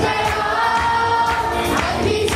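Live worship music: a woman sings lead into a microphone, backed by a group of singers and an electronic keyboard, with a steady beat.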